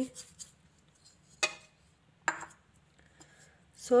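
Two sharp taps a little under a second apart, each with a brief ring: a small bowl knocked against the pickle dish to shake out nigella seeds (kalonji).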